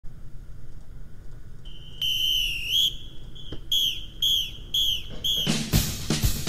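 High whistle tones: one long whistle that slides upward at its end, then four short downward-falling whistles about two a second, with a drum beat starting just before the end.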